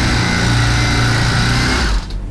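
Handheld electric power cutter running steadily at high speed as it cuts into a handbag, its motor stopping just before the end.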